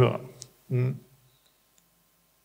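A man's voice through a microphone finishing a sentence, with a single faint click about half a second in, then near silence for the last second.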